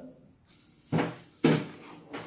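Two knocks about half a second apart, kitchen utensils being handled and set down.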